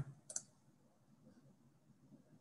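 Near silence with one brief, sharp click about a third of a second in.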